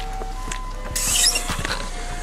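Mercedes-Benz W221 S-Class air suspension whistling thinly as it re-levels itself, with a short hiss about a second in.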